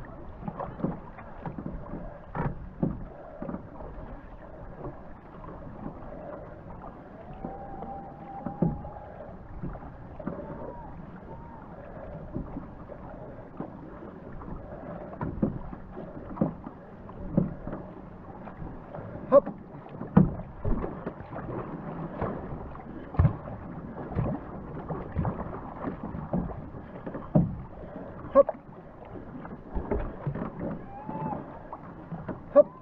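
Racing canoe paddles stroking through the water about once a second. Each stroke brings a splash or knock over the steady rush of water along the hull.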